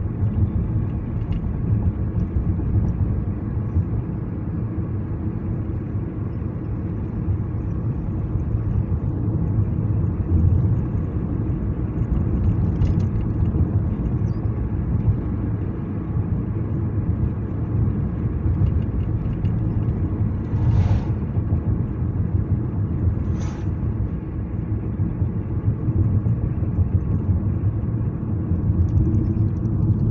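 Steady low road and engine rumble of a car being driven, heard from inside the cabin, with two brief, higher noises about 21 and 23 seconds in.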